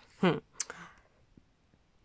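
A woman's short hummed 'hmm', followed about half a second in by a single sharp mouth click.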